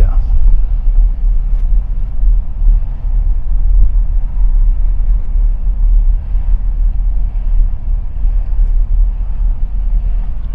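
A car driving along a street: a steady low rumble of road and engine noise.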